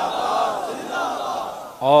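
A large crowd chanting a slogan together in loud unison, dying away near the end as one man's amplified voice starts up.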